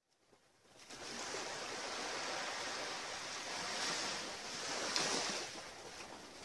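Small sea waves washing and lapping on a rocky shore. The sound fades in about a second in and surges a little louder twice, near four and five seconds.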